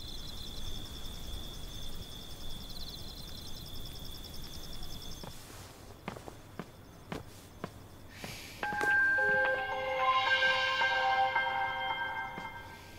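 A steady high insect trill for the first five seconds or so, then a few soft footsteps. Then, with about three seconds to go, a sustained electronic chord of several steady tones: a television switching itself on by itself.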